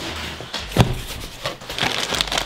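A cardboard shipping box being handled and opened: cardboard rustling and scraping, with a sharp knock a little under a second in and a few lighter knocks.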